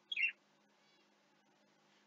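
A cat gives a short, high meow that falls in pitch just after the start, with a fainter one about a second later.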